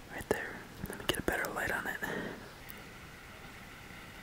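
A man whispering a few words, with a few sharp clicks in the first second or so.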